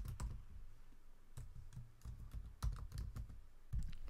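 Typing on a computer keyboard: a faint, irregular run of key taps as a username and password are entered.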